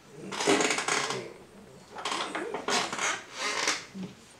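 Wooden-handled carving tools being handled and set down on a wooden workbench, in two short stretches of clattering and scraping.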